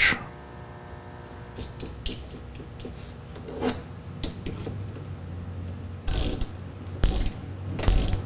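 Hand socket ratchet clicking as it tightens a terminal nut on the panel: faint clicks at first, then three louder spells of ratcheting about a second apart near the end.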